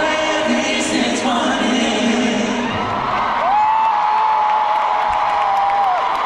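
Live Afrobeats concert music with singing, heard from the stands of a large arena. About halfway through, a voice slides up into one long held high note that lasts to the end.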